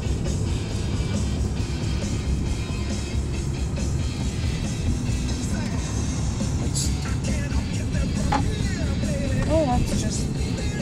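Steady road and engine rumble inside a moving car's cabin, with music playing along with it.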